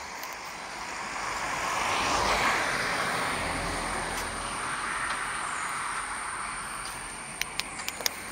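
A passing motor vehicle: a rush of tyre and engine noise with a low rumble, swelling over the first couple of seconds and slowly fading. A few sharp clicks come near the end.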